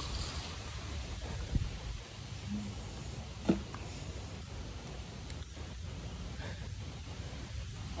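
Quiet outdoor background noise with two faint soft knocks, about one and a half and three and a half seconds in.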